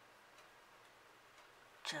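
Near silence: quiet room tone with a faint tick or two, then a woman's voice starting just before the end.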